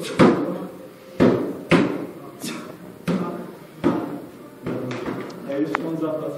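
A series of sharp knocks and clanks of gym equipment, about one a second at irregular intervals, each ringing briefly in a large room, over a background of voices.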